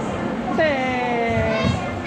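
A young child's voice calling out: one long, high call starting about half a second in and slowly falling in pitch, over a busy background of children's voices.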